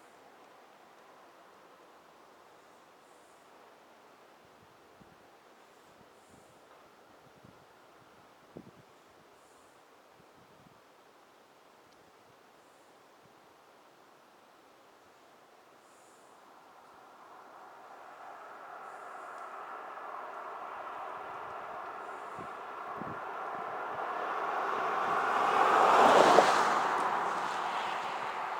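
A pickup truck driving past on the road. Its tyre and engine noise swells from about halfway through, is loudest a couple of seconds before the end, and then starts to fade. Before it comes, the roadside is nearly quiet.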